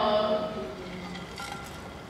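A child's voice drawing out a falling hesitation sound in the first half second, then trailing off into fainter, hesitant voicing.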